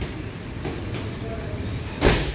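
Gym room noise between strikes: a steady low hum with faint scattered knocks, and a brief faint high tone about a quarter second in.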